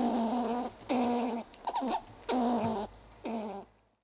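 Five short, wavering animal-like calls, each about half a second long and roughly a second apart. The shorter middle one slides in pitch.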